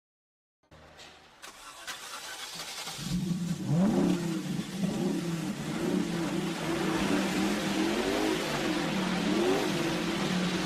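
Out of silence, a hiss fades in and swells. A low, steady, engine-like drone joins it about three seconds in and runs on, with wavering pitch glides on top.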